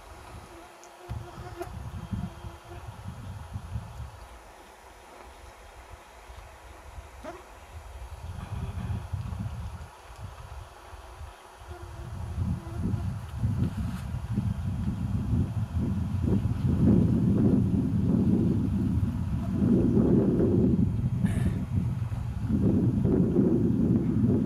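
Wind buffeting the camcorder microphone in uneven gusts, a low rumble that grows louder through the second half.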